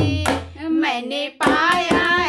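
Woman singing a sohar folk song with a hand-drum accompaniment. The drum beat drops out for about a second mid-phrase while the voice carries on alone, then comes back in strongly near the end.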